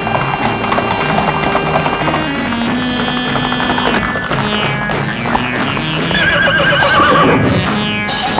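Film score music with held notes, and a horse whinnying over it about six seconds in: a wavering call that falls in pitch over a second and a half.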